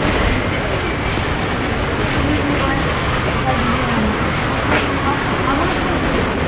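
Steady outdoor background noise on an old camcorder recording: a constant rush with faint voices in it.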